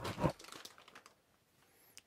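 A plastic bag holding a die-cast toy car crinkles briefly as it is handled, followed by a few faint rustles.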